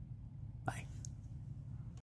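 Quiet room tone with a steady low hum, broken by one short click-like sound about two-thirds of a second in.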